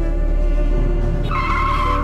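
Car tires screeching in a sustained high squeal that starts about a second and a half in, over a steady low music bed.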